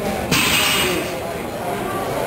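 Voices of a crowd of spectators murmuring in a large hall. About a third of a second in there is a loud, hissing burst of noise that lasts about a second, likely a shout or a cheer.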